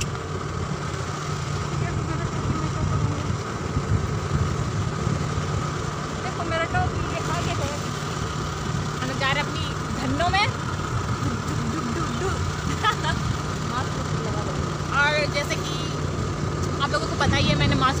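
Motor scooter engine running steadily while riding, with a low rumble of road and wind noise. Brief snatches of voices come through over it.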